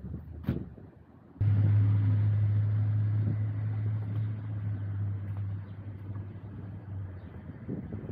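A single knock, then a steady low engine hum of a nearby motor vehicle that starts abruptly and slowly fades over several seconds.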